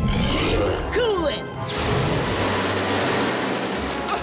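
Cartoon monster-snake growling for the first second and a half, then a freeze-ray sound effect: a long, even hissing blast from nearly two seconds in, over background music.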